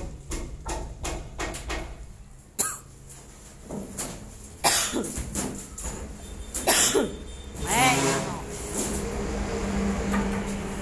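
Coughs, sharp separate bursts a few seconds apart, then a person laughing near the end.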